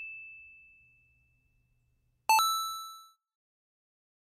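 A bell-like ding sound effect, a single clear tone, dies away. About two seconds later a brighter chime struck twice in quick succession rings out and fades within a second.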